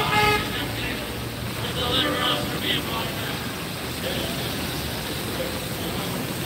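City traffic on a rain-wet street: cars driving past with tyres on wet pavement. A short car-horn toot sounds right at the start.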